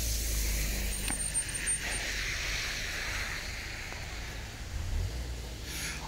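Road traffic on wet roads: a steady low rumble with tyre hiss that slowly fades.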